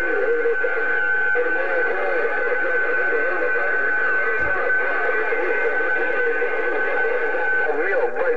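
A President HR2510 transceiver's speaker receiving a distant station on 27.025 MHz: distorted, hard-to-follow voice audio under a steady whistling tone that stops near the end.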